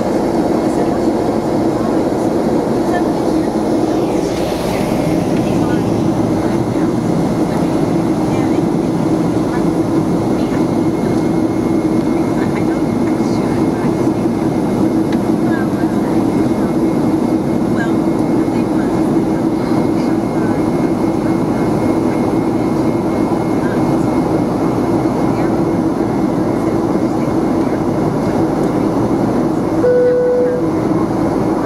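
Airplane cabin noise in flight: a steady engine drone with a constant low hum over an even rushing noise, unchanging throughout.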